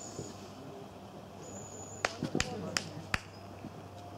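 Faint shouts of players across a football pitch, then a quick, uneven run of about five sharp clicks a little past halfway.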